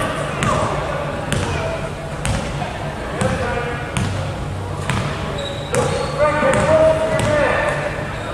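Basketball dribbled on a hardwood gym floor, bouncing about once a second, in a large echoing hall. Indistinct voices shout over it, loudest in the second half.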